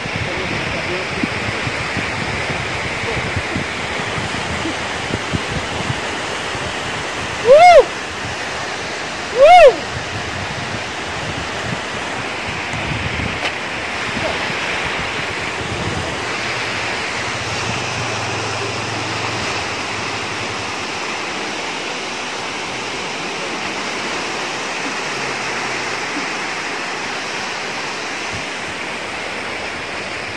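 Steady rushing of a fast-flowing river far below, with some wind buffeting the microphone. About a quarter of the way in, two short, loud pitched sounds about two seconds apart, each rising then falling in pitch, stand out above it.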